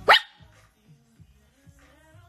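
A small dog's single short, sharp bark right at the start, rising quickly in pitch.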